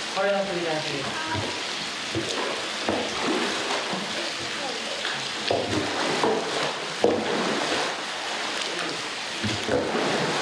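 Long wooden boards churning and splashing hot spring water in a wooden bath: yumomi, the stirring of the spring water to cool it. It makes a steady rush of splashing, with a sharp knock about seven seconds in.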